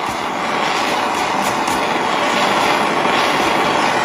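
Handheld jeweler's torch flame burning with a steady hiss as it heats a flux-coated silver bail and back piece on a soldering brick, drying the Prips flux to lock the bail in place before soldering.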